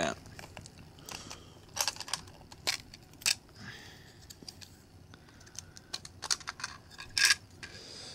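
Handling clicks and knocks of a GoPro HD Hero2 camera being worked out of its clear plastic waterproof housing: the latch and back door opened and the camera pried out, a few scattered sharp clicks with the loudest about seven seconds in.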